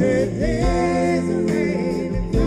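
Live rock band playing: electric guitars and bass under a sustained sung vocal line with vibrato.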